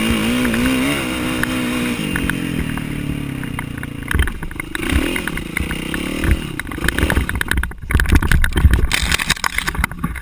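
Kawasaki KX450F single-cylinder four-stroke dirt-bike engine revving up and down while riding over rough dirt. From about the middle on it is joined by repeated knocks and clattering, loudest just before the end, as the bike goes down into tall grass in a crash.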